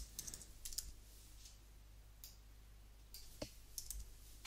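Faint computer keyboard typing: a handful of irregularly spaced keystroke clicks.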